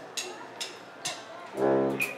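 Three sharp ticks about half a second apart, a count-in, then the saxophones and brass of a school band come in together with a loud chord about one and a half seconds in.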